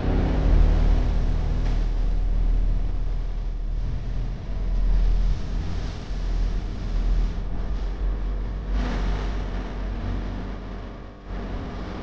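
Deep, steady rumble of a cinematic title sound effect, starting suddenly, with noisy swells about halfway through and again later, dying away near the end.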